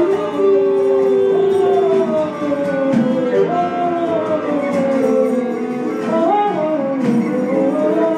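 Live improvised ensemble music: sustained melodic lines that glide slowly downward in pitch over a lower held layer, with one long steady note in the first two seconds.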